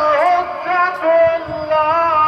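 A single voice singing long held notes that slide and waver between pitches, with music.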